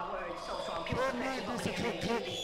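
A voice over a quiet breakdown in a live hardcore rave DJ mix, with a few low thuds under it.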